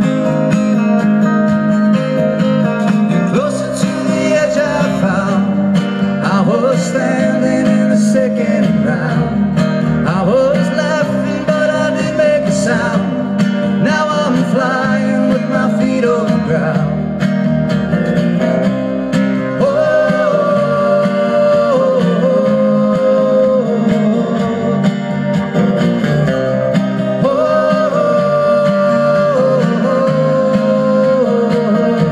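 Live acoustic band music: acoustic guitars strummed over upright bass and drums, with a melody line sliding above, recorded on a phone's microphone.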